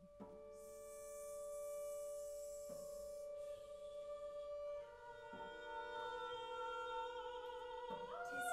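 Small live chamber ensemble playing soft held notes that enter one after another, about every two and a half seconds, building into a sustained chord. A soft airy hiss sounds over the first three seconds.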